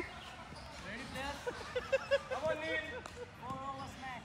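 Players calling out to each other, with two quick knocks of a tennis ball about two seconds in.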